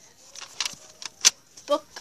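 Handling noise from the recording device: a few short, sharp clicks and taps as fingers grip and move it, then a child's voice says a word near the end.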